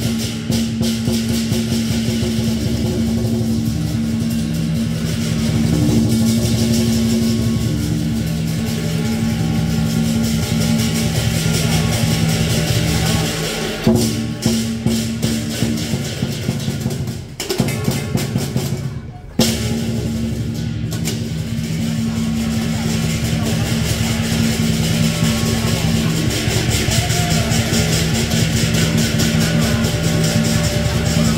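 Lion dance percussion: a Chinese drum beaten fast with rapidly clashing cymbals and a ringing gong, keeping time for the lion's movements. The playing breaks off briefly a little past halfway, then picks up again.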